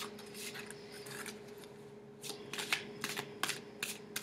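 A deck of tarot cards being shuffled by hand: a string of soft, irregular card clicks, several a second, over a faint steady hum.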